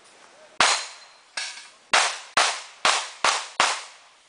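A fast string of pistol shots in a practical shooting stage, seven sharp reports about half a second apart, the second one quieter than the rest.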